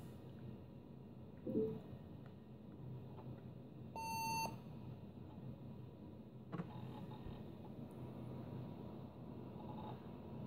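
Compaq LTE 5280 laptop's built-in speaker giving a single steady half-second beep about four seconds in as it reboots: the POST beep that signals the power-on self-test has passed. A brief low pitched sound comes earlier, and a single click follows about six and a half seconds in.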